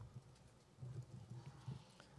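Near silence with a few faint, short knocks: hands handling podium microphone stems.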